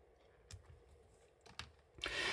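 Near silence: room tone with two faint clicks, about half a second in and again about a second later.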